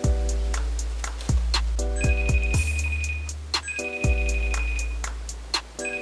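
Background music: a beat with deep bass notes, steady hi-hat ticks and repeating chords, looping about every two seconds.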